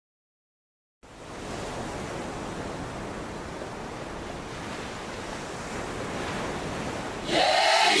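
Steady rushing noise, even and without any tone, starting after about a second of silence. Near the end it swells into a brief louder whoosh with a falling pitch.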